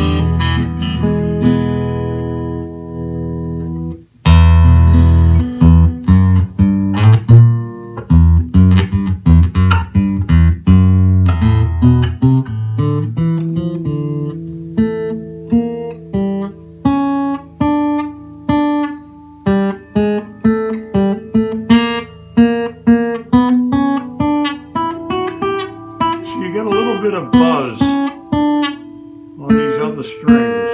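Orangewood Oliver Black acoustic guitar, on its factory Ernie Ball Earthwood 11–52 strings, played fingerstyle. A chord rings and fades, then about four seconds in comes a run of loud, bass-heavy picked chords that eases after about twelve seconds into lighter single-note picking over held notes.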